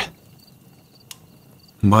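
Faint background chorus of crickets chirping in short, evenly repeated high chirps over a thin steady tone, with one faint click about a second in.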